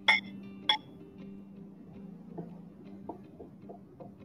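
Two sharp, ringing clinks of a ruler's edge knocking against a ceramic paint palette plate as it picks up paint, followed by a few soft taps.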